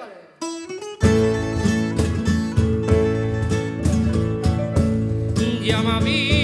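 A Valencian folk band of guitars, llaüt (Valencian lute), piano, bass and percussion plays an instrumental interlude of plucked and strummed strings with a steady pulse. It enters fully about a second in, after the singer's held note dies away. Near the end the singer's voice comes back in with a wide vibrato.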